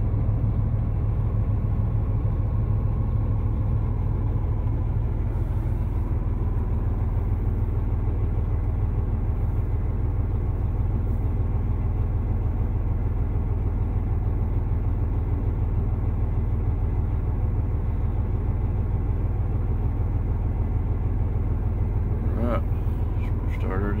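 Semi truck's diesel engine idling, heard from inside the cab: a steady low rumble.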